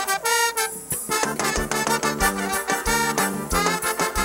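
Live forró band playing an instrumental passage with a steady beat.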